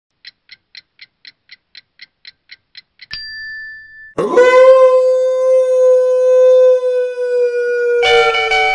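Added sound effects: about a dozen quick light ticks, some four a second, then a short high beep, then a loud struck note that rings on steadily for nearly four seconds.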